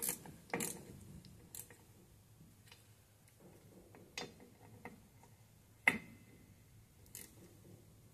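Faint, irregular metallic clicks and taps from fitting the two holding nuts of a rear drum-brake wheel cylinder, with the loudest sharp clink about six seconds in.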